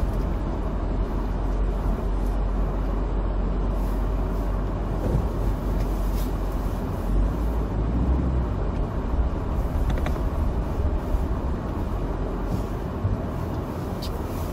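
In-cabin driving noise of a Toyota TownAce van on Dunlop Winter Maxx SV01 studless tyres rolling slowly over a dirt track: a steady low rumble of engine and tyres, with a few brief knocks now and then.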